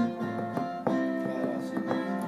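Acoustic guitar strumming chords between sung lines, a few strokes that ring on steadily with no voice over them.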